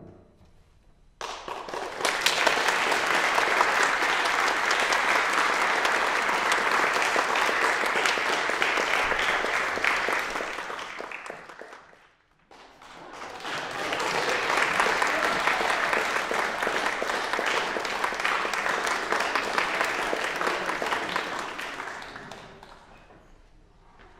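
Audience applauding in a recital hall. It starts about a second in, fades out briefly near the middle, then swells again and dies away near the end.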